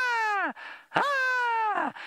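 A man imitating the hadeda ibis's call: two long, loud 'haaa' notes, each falling in pitch at the end.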